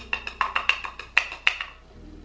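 A makeup brush tapped and worked in a plastic powder compact: a quick, irregular run of light hollow taps, about seven a second, that stops near the end.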